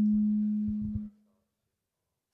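A loud, steady low hum from the hall's sound system, one tone with faint overtones, with a few soft handling thumps on the handheld microphone under it; it cuts off suddenly about a second in.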